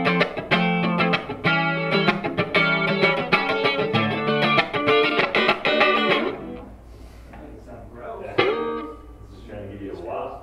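Electric guitar played through an Old Blood Noise Endeavors Reflector V3 chorus pedal: fast, busy picked chords that ease off about six seconds in to quieter, sparser notes, with one sharp struck chord near the end.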